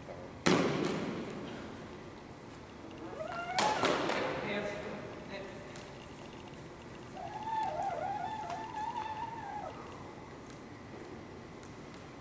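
Two sharp blows from training swords landing in sparring, one about half a second in and one about three and a half seconds in, each ringing out in the echo of a gym hall. Later a person gives a drawn-out, wavering vocal call for a couple of seconds.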